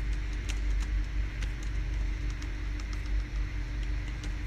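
Steady low hum with a faint steady tone above it, and a few faint, scattered clicks.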